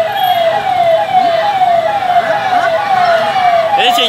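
A vehicle siren on a fast yelp, about three falling wails a second, over the steady noise of a large street crowd.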